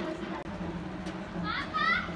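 Children at play, calling and shouting, with two short rising high-pitched calls near the end.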